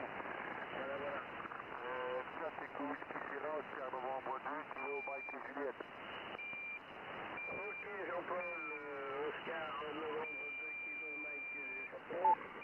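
A voice received through a Yaesu HF transceiver's speaker on the 40 m amateur band in single-sideband, with narrow, clipped-top radio audio. A high steady whistle cuts in and out several times over the voice in the second half, held longest near the end.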